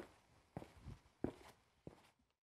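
Footsteps of a man walking across a classroom floor, about four quiet steps, one roughly every half second.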